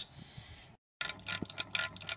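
Rapid, irregular clicking and ticking over a steady low hum, starting right after a brief dropout to dead silence a little under a second in.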